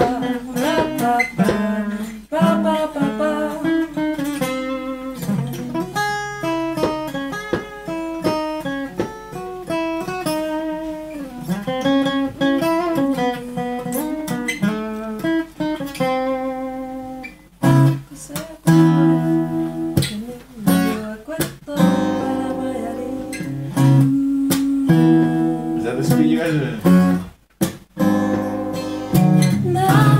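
Acoustic guitar playing: a run of changing single notes in the first half, then chords with short breaks from about halfway, and a brief stop near the end.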